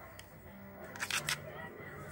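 A few quick, sharp crackles and rustles about a second in: a pregnant doe rabbit tugging tissue paper and cloth as she builds her nest before kindling.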